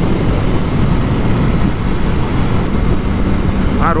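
Motorcycle riding at highway speed: a steady, loud rush of wind and engine noise on the bike-mounted camera's microphone.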